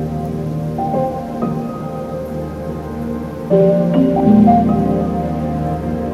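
Eurorack modular synthesizer playing minimal ambient music: an Expert Sleepers Disting EX sample player sounds overlapping, sustained notes in a shifting random pattern set by Mutable Instruments Marbles, fed through Clouds granular processing and a T-Rex Replicator tape delay. New notes enter about a second in and near the middle, the one near the middle the loudest.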